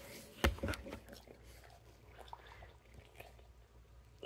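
A single bump on a handheld microphone about half a second in, followed by a few smaller clicks and then faint scattered clicks and rustles.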